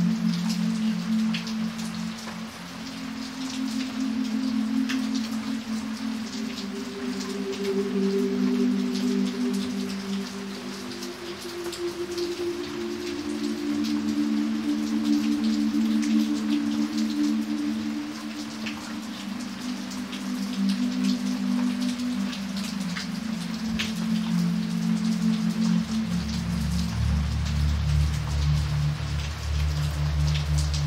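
Steady rain falling on wet pavement, with individual drops splashing. Under it, soft sustained low music chords change slowly, and a deeper note comes in near the end.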